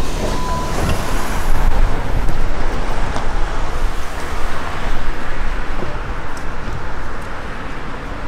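City bus running at a stop as passengers step off through its door, a dense steady noise, with a steady beep lasting about a second at the start.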